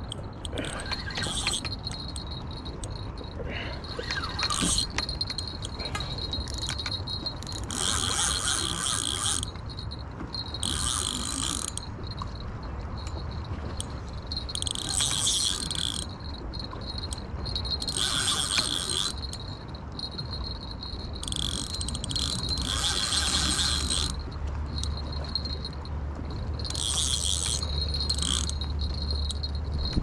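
Spinning reel buzzing in repeated spurts of a second or two, under the load of a heavy fish being played. A low rumble comes in near the end.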